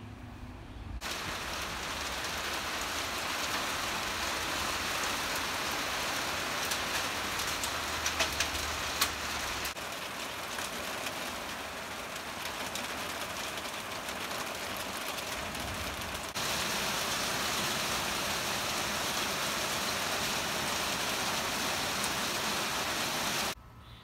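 Heavy rain falling and pouring off a roof edge, a dense steady hiss that starts about a second in and cuts off suddenly near the end, its loudness stepping up or down abruptly twice along the way. A few sharp ticks stand out about a third of the way in.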